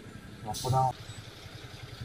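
Motorcycle engine running low and steady as the bike crawls up to a toll booth, with one short spoken word about half a second in.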